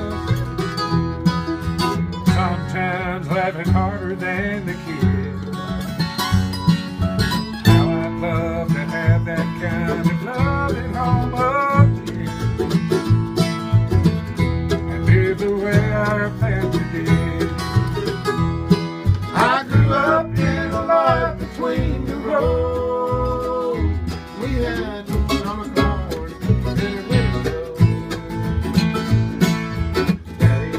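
Instrumental break of a bluegrass-style country song: an upright bass plucked steadily under a strummed acoustic guitar, with a picked melody line running above.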